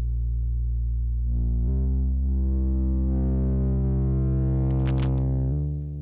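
Sustained synthesizer bass line through diode clipping. As a knob is turned, the tone grows brighter and buzzier, then drops back near the end. A few brief crackles from a scratchy knob come about five seconds in.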